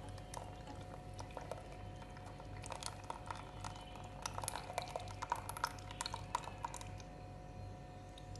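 Faint sound of thick custard pouring from a steel vessel into a steel bowl of cut fruit, with soft splashing and crackling as it lands. The splashing is busiest in the middle and later part of the pour.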